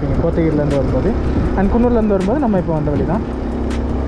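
A man talking, with a steady low motorcycle drone underneath as it rides along a road.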